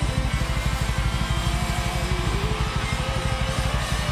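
Live rock band playing: electric guitars held over a steady, driving drum-kit beat at full volume.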